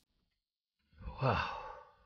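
A person's drawn-out, sighed 'wow' about a second in, falling in pitch.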